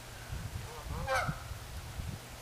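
A waterfowl giving one short call about a second in, over a steady low rumble.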